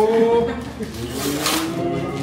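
Guests' voices, including drawn-out excited calls, as a brown paper gift bag is torn open, with a short crackle of paper about one and a half seconds in.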